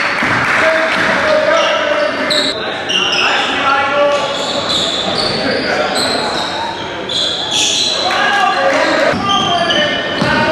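Live basketball game sound in a large echoing gym. Sneakers squeak on the hardwood and a basketball bounces, under shouting from players and the crowd.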